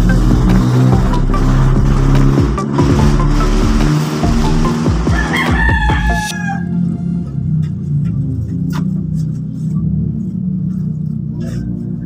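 A rooster crowing, one long call with a rising start and a held note that ends about six seconds in, over background music.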